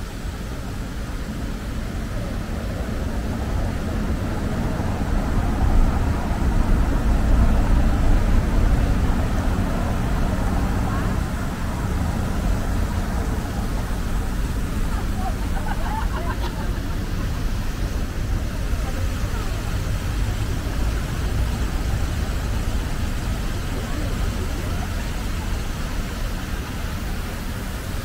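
Street traffic with a city bus passing close by, its engine rumble growing louder and peaking about a quarter of the way in before easing off, with passers-by talking.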